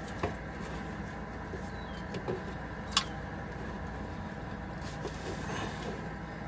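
Large channel-lock pliers working a fuel filter's water separator bowl loose, with small ticks and one sharp metallic click about three seconds in, over a steady low hum.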